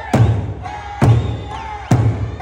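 Eisa drums struck together in time: large Okinawan barrel drums (ōdaiko) and small hand-held shime-daiko hit about once a second, three heavy beats here. Okinawan folk song with singing carries on underneath.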